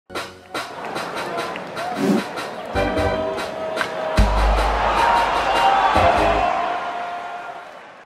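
Intro stinger music for a baseball highlight segment, with sharp percussive hits, a deep boom about four seconds in, and a fade-out near the end.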